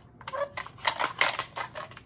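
Hard plastic parts of a vegetable chopper's mandoline slicer and its food holder clicking and clattering as they are handled and fitted together: a quick, irregular run of sharp clicks.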